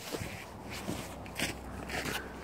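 Footsteps in snow: boots crunching at a steady walking pace, about four steps.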